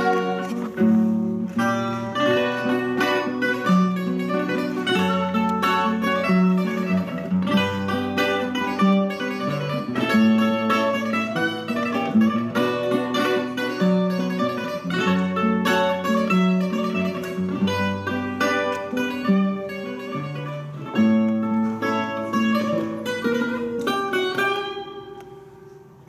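Portuguese guitar (Coimbra guitar) playing a plucked melody over a classical guitar's accompaniment, in an instrumental passage of a Coimbra-style serenade. The playing fades down near the end.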